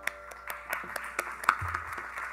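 Scattered audience clapping, sharp irregular claps, as the last ring of the mridangam dies away at the very start.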